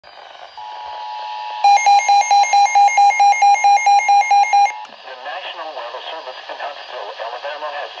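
Midland NOAA weather radio going off for a tornado warning. A steady two-note alert tone comes on about half a second in, then loud rapid beeping, about four or five beeps a second, sounds over it for about three seconds. Both stop about five seconds in, and a synthesized voice starts reading the warning.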